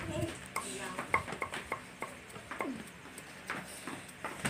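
Cleaver knocking on a round wooden cutting board while chopping, a run of quick, irregular knocks around the first two seconds and a few more later.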